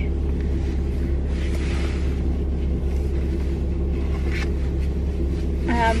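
Steady low hum of a Fiat 500 idling, heard from inside its cabin. A soft rustle about one to three seconds in and a faint click later on.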